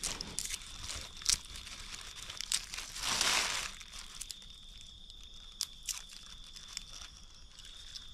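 Thin plastic bag rustling and crinkling as hands work in it, with scattered small clicks and a louder rustle about three seconds in. A faint steady high-pitched tone sits underneath.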